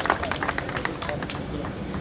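A small crowd applauding, the clapping thinning out and fading about a second in, with people talking.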